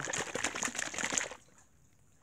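Close crackling, rubbing handling noise for about a second and a half, then it stops.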